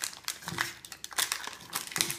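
Thin plastic wrapper on an LOL Surprise toy ball crinkling in irregular crackles as it is peeled off by hand.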